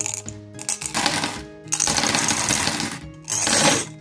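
Flat glass gems poured from a glass jar into an aluminium foil tray, clattering against each other and the foil in three bursts, the last one short.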